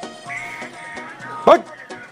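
Background music with steady held tones, broken about a second and a half in by one brief, loud vocal call that sweeps up and down in pitch.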